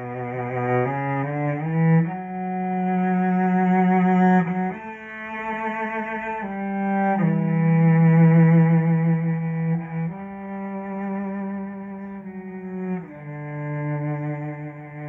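Cello played with the bow: a slow melody of long held notes with vibrato, changing pitch every second or two.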